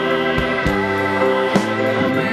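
Live pit-band music heard through a keyboard player's in-ear monitor mix: sustained keyboard chords over a pulse of low thuds.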